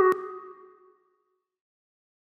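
CapCut end-screen jingle: a short electronic tone with a sharp click just after the start, fading out by about a second in.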